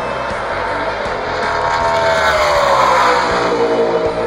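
NASCAR Nationwide Series stock car's V8 passing at racing speed. The engine note swells to its loudest about three seconds in, then drops in pitch as the car goes by.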